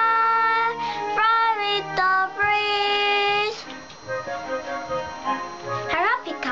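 A child singing long held notes of a children's song over a backing track. About three and a half seconds in, the voice stops and the accompaniment carries on more quietly on its own.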